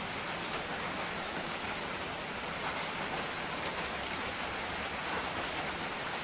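Steady, even hiss of background noise, like rain, with no distinct knocks or clinks.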